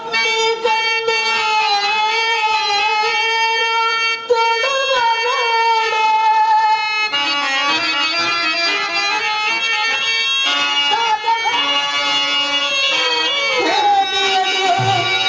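Instrumental background music: a sustained, slightly wavering melody line for the first half, giving way to held chords about halfway through.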